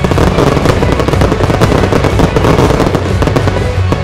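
Aerial firework shells bursting overhead: a dense run of sharp cracks and bangs that starts at once and thins out near the end, over loud music.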